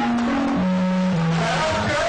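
Live band music with electric guitars, held low notes stepping down in pitch.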